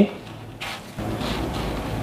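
Dry panko breadcrumbs rustling and crunching as a hand rolls a breaded potato croquette through them in a plastic bowl. There is a short rustle about half a second in, and a steadier rustling from about a second in.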